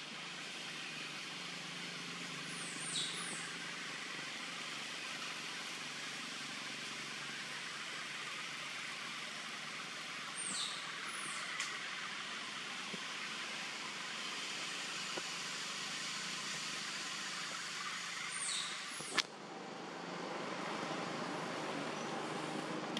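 Steady outdoor background hiss, broken three times by a few short, high chirps that fall in pitch, and once by a sharp click about three seconds before the end.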